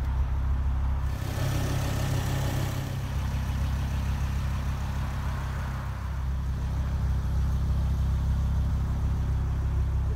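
Ford Focus RS Mk2's turbocharged 2.5-litre five-cylinder idling steadily through an aftermarket Milltek exhaust, a deep, even low note. A brief hiss rises over it about a second in.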